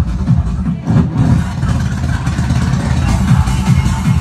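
Techno played live through a PA: a loud, steady, heavy kick-drum and bass beat, with a brief drop in the bass a little under a second in.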